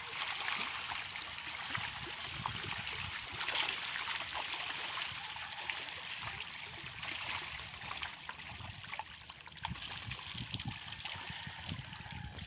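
Many small splashes merging into a steady fizzing of water as a dense school of milkfish churns at the pond surface.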